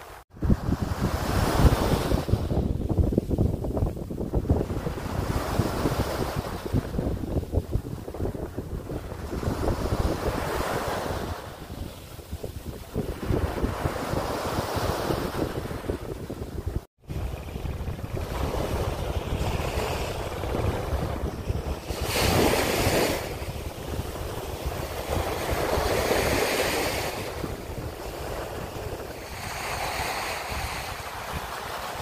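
Small waves breaking and washing up a sandy beach, the surf swelling and fading every few seconds, with wind buffeting the microphone. The sound drops out for an instant twice, just after the start and about halfway through.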